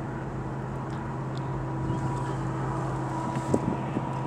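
A steady low hum over a faint, even background rush, with a brief knock near the end.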